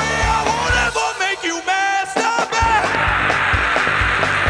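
A live rock band with drums, bass and guitar playing a song. About a second in, the drums and bass drop out for a moment, leaving a bending lead line. Then the full band comes back in, with cymbals crashing.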